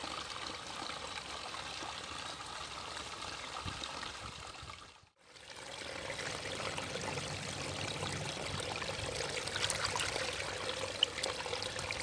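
Small shallow stream trickling steadily over stones and leaf litter. The sound drops out briefly about five seconds in, then the running water carries on.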